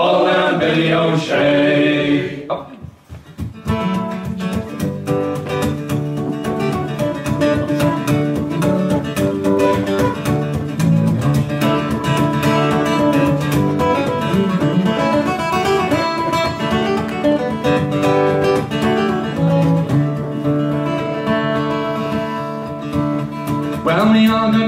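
A man's singing voice ends a line, then after a short pause about three seconds in, an acoustic guitar plays a strummed instrumental passage of an Irish folk song.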